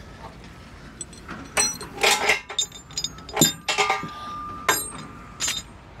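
Metal clanks and clinks, about half a dozen separate hits with short ringing after them: tie-down chains and a load binder being handled against the trailer's steel deck.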